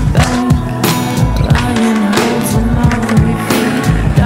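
Skateboard sounds, wheels rolling and the deck hitting concrete, mixed into a music soundtrack with a steady drum beat.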